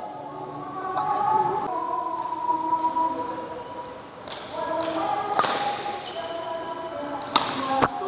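Badminton racket strikes on a shuttlecock: sharp hits, one about halfway through and two close together near the end, over voices in the hall.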